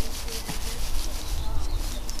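Red metallic tinsel pom-pom rustling and crinkling as it is rubbed against a face, with a low rumble underneath.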